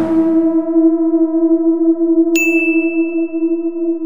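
Intro sound effects: a low ringing tone, like a struck bell, held and slowly wavering, and about two seconds in a short bright ding that rings on over it.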